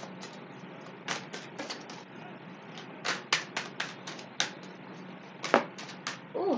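A deck of tarot cards being shuffled by hand, overhand: quick runs of light card clicks in bursts of a few at a time, with a sharper snap near the end.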